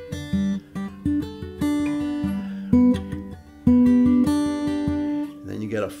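Cutaway acoustic guitar fingerpicked: a slow phrase of plucked notes over a ringing bass, played on a G-chord voicing with the index finger catching the third string at the seventh fret.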